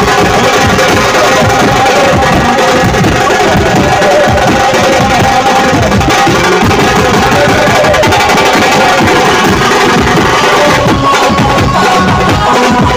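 An Indian street brass band playing loud processional music: several marching drums beaten with sticks in a fast, dense rhythm, with a melody line held over the drumming.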